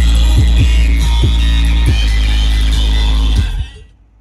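Loud dance music with a heavy, sustained bass and punchy kick-drum beats from a DJ truck's bass speaker setup. It fades out about three and a half seconds in.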